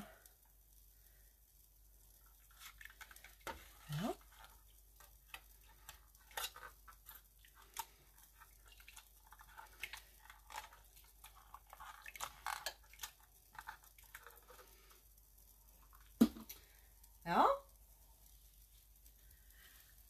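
Soft squishing of wet yarn and small clicks and taps as a plastic cup pours dye into it and presses it down in a stainless steel pot. A few brief vocal sounds come in about four seconds in and again near the end.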